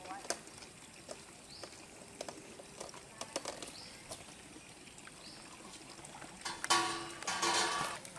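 Water splashing from a hooked fish thrashing at the pond surface: a loud, noisy burst of about a second and a half near the end. Before it there are quiet outdoor surroundings with faint scattered clicks.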